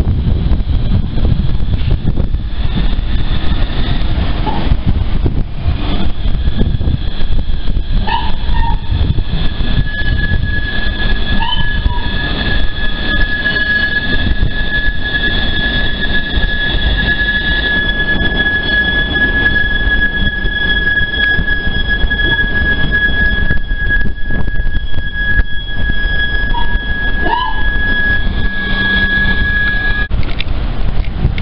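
Fukui Railway FUKURAM articulated low-floor tram running slowly through a curve, its wheels squealing. The squeal is a steady high-pitched tone that sets in about ten seconds in and holds, with a few short squeaks before and after it, over a constant low rumble.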